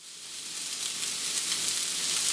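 Sliced onions and bell peppers sizzling in a hot cast iron skillet, fading in from silence and growing steadily louder.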